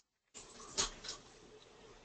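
A pause on a webinar audio line: dead silence, then faint line hiss with one short, soft sound just under a second in.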